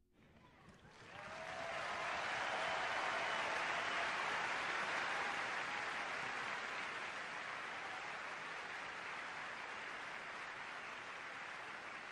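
Audience applauding in an auditorium, swelling up about a second in and then holding steady.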